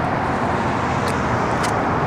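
Steady rushing noise of road traffic, even in level throughout.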